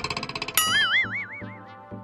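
Cartoon sound effect: a fast rattling run, then a springy tone that wobbles up and down in pitch from about half a second in and fades out, over background music with a steady beat.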